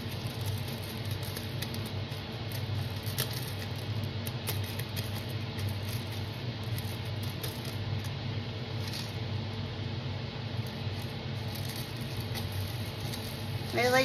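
Crushed mirror glass being sprinkled from a plastic cup into a silicone coaster mold: a light, irregular patter with a few faint ticks, over a steady low hum.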